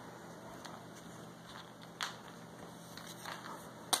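Quiet room tone with one sharp click about halfway through and a couple of faint ticks near the end.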